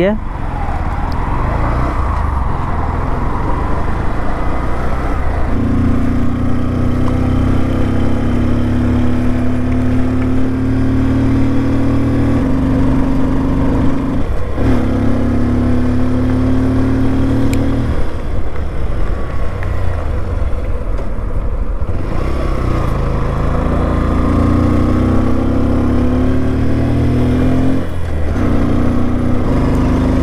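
Bajaj CT 125X's single-cylinder 125 cc engine running under way at road speed, heard from the rider's seat. Its note steps and drops at times, then rises again as the bike accelerates.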